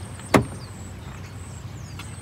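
A single sharp clunk about a third of a second in, as a Land Rover Defender 110's rear side door latch releases and the door is opened, over a steady low background hum.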